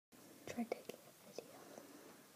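A person whispering faintly, in a few short bursts with soft clicks, mostly in the first second and a half.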